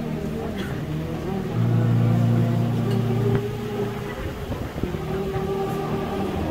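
Church orchestra's wind and brass instruments sounding long, held low notes. A loud deep note comes in about a second and a half in and lasts nearly two seconds, and a higher held note follows.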